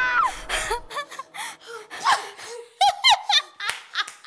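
A woman's long held scream cuts off just after the start, followed by a woman laughing in short, choppy bursts.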